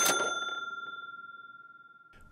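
A single bright bell-like ding, an editing sound effect, struck once and ringing down steadily over about two seconds.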